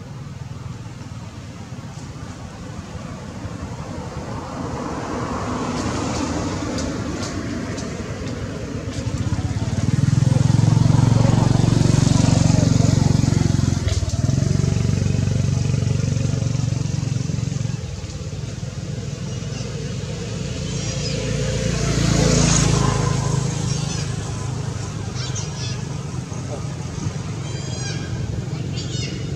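A motor engine running nearby, getting much louder about nine seconds in, easing off after about eighteen seconds and swelling again briefly a little after twenty seconds.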